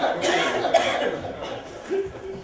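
Theatre audience laughing, with a loud cough near the start; the laughter dies down over the second half.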